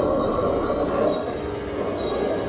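Film soundtrack of a train carriage: a steady rumble with creaking, and a thin high squeal from about a second in.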